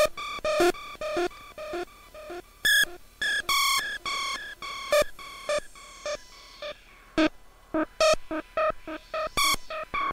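Korg Monotron Delay synthesizer playing short electronic bleeps in an even repeating pattern, about two a second. Its delay echoes trail and fade behind each note, and louder, brighter notes come in every second or two.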